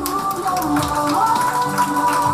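Music playing.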